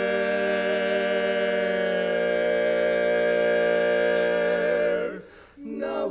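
Barbershop quartet of four men singing a cappella, holding one long sustained chord for about five seconds. The chord is released with a short gap, and the singers come back in with the next phrase near the end.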